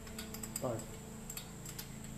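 A few light, irregular metallic clicks from a socket ratchet, extension and spark-plug socket being handled as a loosened spark plug is lifted out of the engine.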